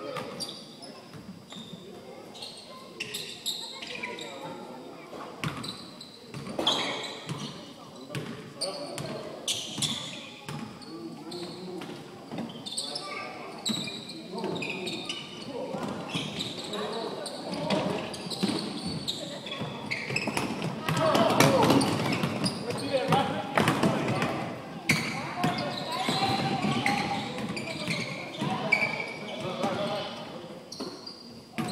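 Basketballs bouncing on a hardwood gym floor during play, with players' voices calling out indistinctly, echoing in a large hall. The voices are loudest about two-thirds of the way through.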